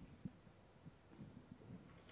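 Near silence: room tone, with one faint soft knock about a quarter second in.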